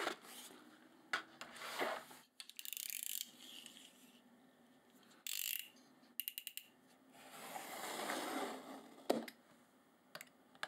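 Hands handling paper and a sheet of kraft board, with rustling and light scrapes on the desk. About six seconds in, a yellow snap-off utility knife's blade is slid out with a quick run of clicks. Then comes a swell of paper rustling and a single sharp click near the end.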